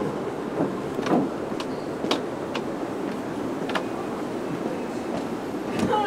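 Footsteps on a concrete walkway, a short tap about every half second to a second, over a steady low city rumble.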